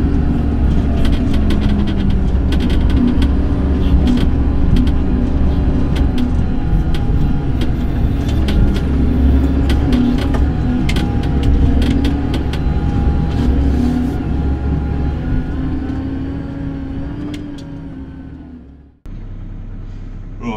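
JCB Fastrac tractor driving across a rough field, heard from inside the cab: a steady engine drone with frequent rattles and knocks as the cab jolts over the ground. It fades out near the end.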